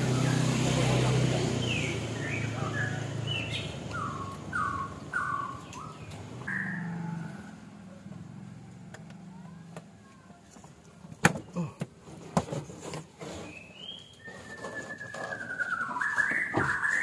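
Small birds chirping in a quick series of short calls over a low hum that fades after the first few seconds. A few sharp clicks and knocks follow later, and a falling whistled call comes near the end.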